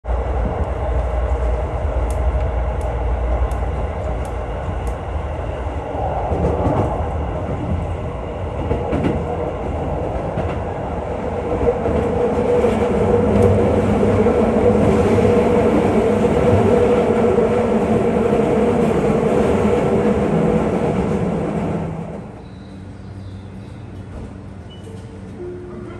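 Passenger train running along the track, heard from inside a carriage: a steady rumble of wheels on rail, with a row of light, evenly spaced clicks in the first few seconds. A steady hum builds from about halfway, and the whole sound drops away sharply near the end.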